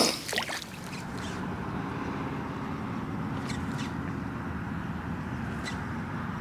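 A short splash of water as a speckled trout is let go in the shallows, then a steady low rush of background noise with a few faint clicks.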